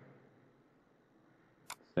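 A single sharp click of a computer keyboard key about three-quarters of the way through, over faint room hiss.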